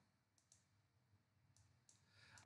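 Near silence, with two faint clicks, about half a second in and near the end, typical of a computer mouse being clicked while scrolling a spreadsheet.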